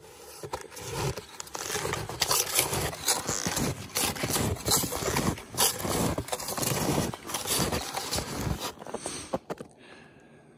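Snowshoes crunching and scraping on a packed snow trail, step after step in an uneven rhythm; the noise eases off near the end.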